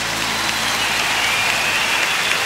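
Concert audience applauding and cheering as a song ends: a dense, even wash of clapping, with a long high whistle from the crowd over it.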